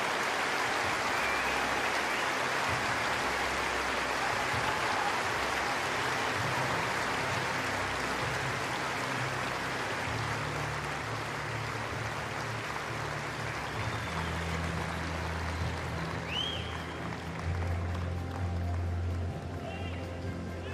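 Large stadium crowd applauding, the clapping slowly dying away, with music playing underneath whose steady bass notes come up about halfway through.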